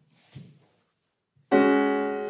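Grand piano: after a near-silent pause, a loud chord is struck about one and a half seconds in and held, ringing and slowly fading.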